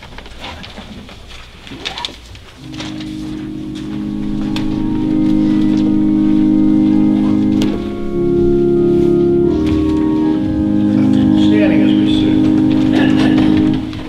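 Organ playing the introduction to a hymn: sustained chords that come in about two and a half seconds in and build in loudness, with a brief dip partway through and a pause near the end.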